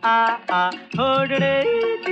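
A 1950s Hindi film song: a singer holds drawn-out "aa aa" notes closing a sung line, over orchestral backing. About a second in, the voice gives way to the accompaniment carrying a stepping melody.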